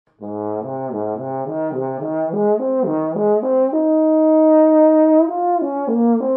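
Bass trombone playing an arpeggio exercise: short notes climbing from the low register, about three a second, to a long held top note, then stepping back down near the end.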